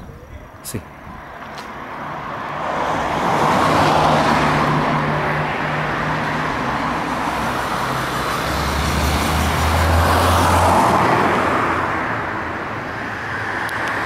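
Cars driving past on a street, their tyre and engine noise swelling twice: about four seconds in and again around ten seconds, the second with a deeper engine hum.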